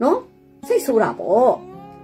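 A woman's voice in two short phrases, the second with long rising-and-falling pitch glides, over faint steady background music.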